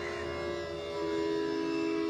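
Bansuri (bamboo flute) playing slow, unaccompanied-by-tabla alap in raga Marwa: long held notes, moving to a new sustained note about a second in, over a steady drone.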